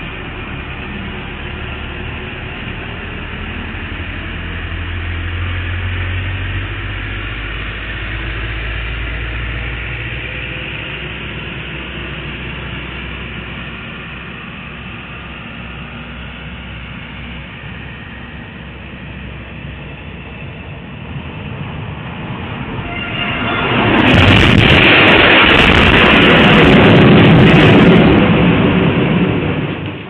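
Security-camera audio of a heavy tractor-trailer crash. A low engine rumble swells and fades in the first third; then, about 24 seconds in, a very loud crashing noise holds for about five seconds as the speeding trailer overturns on a curve, its weight carrying it over, before dying away just before the end.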